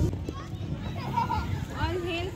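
Children's voices and other indistinct talk, with a child's high-pitched call near the end.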